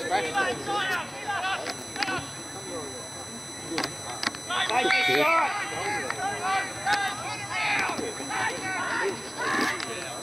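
Several voices shouting and calling out across a football oval, rising to a burst of shouting about halfway through. A few sharp knocks are scattered among the calls.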